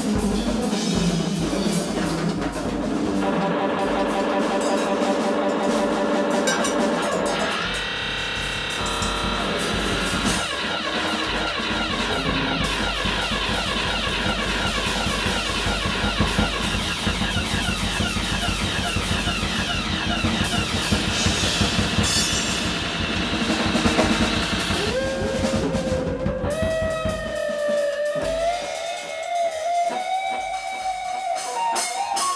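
Electric guitar and drum kit improvising live free jazz: busy drumming under a dense, sliding guitar texture. Near the end the guitar holds gliding tones that bend up and down while the low end thins.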